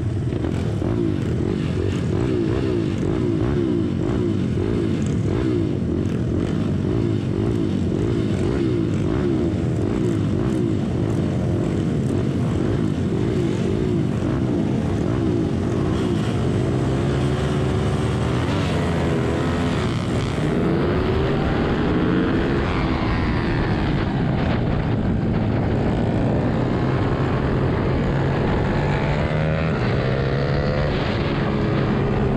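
A pack of small single-cylinder four-stroke minibike engines, the rider's own Ohvale 110 among them, idling and blipping on the starting grid. From a little past halfway the engines rev up in rising and falling sweeps as the bikes accelerate away from the start.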